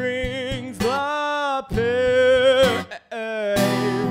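A man singing with his own strummed acoustic guitar. He holds two long sung notes in the middle, and guitar strums come at the start and near the end.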